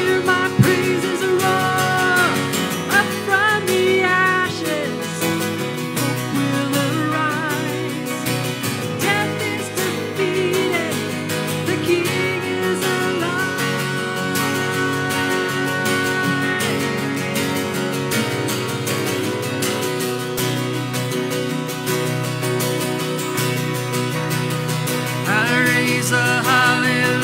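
Live worship band performing a contemporary worship song: women's voices singing over acoustic guitar, piano and drums.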